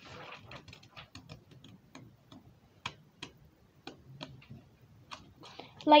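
Scissors snipping into folded paper: a series of short sharp clicks at an uneven pace, a few a second.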